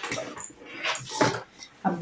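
A black fabric backpack being handled, its material rustling and rubbing in a few short bursts.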